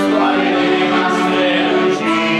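Congregation of women singing a hymn together, with accordion accompaniment.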